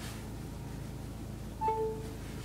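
A short electronic chime of two pure tones, a brief higher note then a lower one, sounds about a second and a half in over a steady low hum in the car's cabin.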